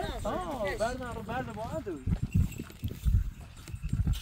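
An animal call: a pitched cry that swoops up and down about six times over the first two seconds, then breaks off into low, irregular thuds.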